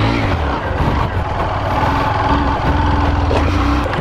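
Honda CG 125 Fan's single-cylinder four-stroke engine running loudly at held, fairly steady revs, with only slight dips.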